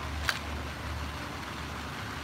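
Steady low rumble of city traffic, with a single sharp camera shutter click about a third of a second in.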